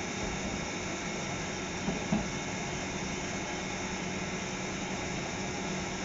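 Steady hum and hiss of electric trains at a station platform, with one short knock about two seconds in.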